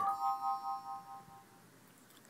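An electronic chime: several bell-like tones sounding together as one chord, ringing out with a slight waver and fading away within about a second and a half.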